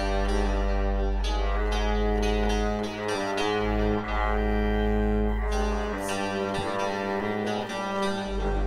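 Live experimental music on bowed double bass and synthesizer keyboards: long sustained notes over a deep steady drone, with short bright note attacks repeating on top.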